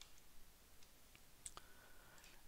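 Faint scattered clicks of a computer keyboard and mouse, a few separate taps against near silence.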